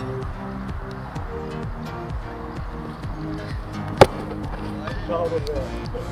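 Background music, with a single sharp thud of a football being kicked about four seconds in.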